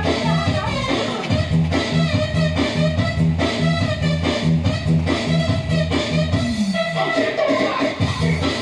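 Upbeat music with a steady beat, about two beats a second, and a singing voice over it.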